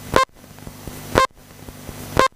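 Electronic countdown beeps from the race timing system, one short, sharp beep each second, two in all: the count-in to the start of an RC car race.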